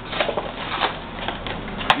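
Cardboard box of Cocoa Pebbles cereal and its inner plastic bag crinkling and rustling as it is handled for opening, with a sharp click near the end.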